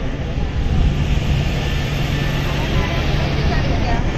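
A vehicle engine running with a steady low hum, under a constant rush of road and wind noise. Faint voices are mixed in.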